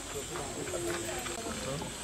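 Faint voices talking in the background, with a steady high-pitched hiss underneath.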